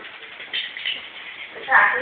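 Steady background noise at a bobsleigh start, with two short bright sounds about half a second in. Near the end an announcer starts to speak.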